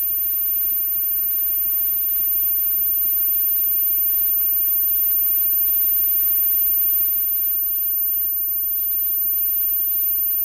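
Steady electrical mains hum from the band's stage amplifiers and PA, with a thin high whine above it. Faint, scattered single instrument notes come through it while the band is not playing a song.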